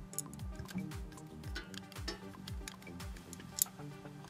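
Quiet background music with a steady low beat. Faint clicks of metal lamp parts being handled and screwed together by hand, with one sharper click near the end.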